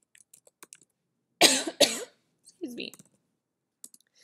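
A person coughing, two loud coughs in quick succession about one and a half seconds in, after a few soft keyboard clicks. A short voiced sound follows the coughs.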